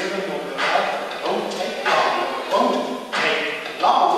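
A man's voice into a hand-held microphone, amplified in a large hall, in phrases of about a second with short breaks.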